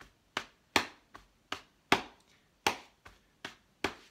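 Hambone body percussion: a hand slapping the chest and thigh in a steady rhythm, about two and a half sharp slaps a second, some louder than others.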